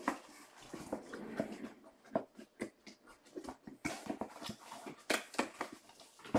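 Packaging being handled: irregular small clicks and crinkling rustles, with a few sharper ticks about two seconds in and near the end.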